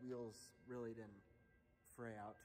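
A man speaking quietly to the camera in two short phrases, then a pause.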